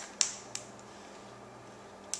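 Two hand claps from a toddler clapping, sharp and short, the second fainter, within the first second.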